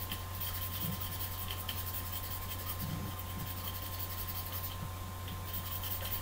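Craft-knife blade scraping the graphite lead of an F pencil, a faint dry rubbing as the lead is whittled to a taper. A steady low hum runs underneath.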